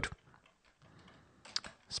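Computer keyboard keys being pressed while code is edited: a few faint clicks, with two quick ones about a second and a half in.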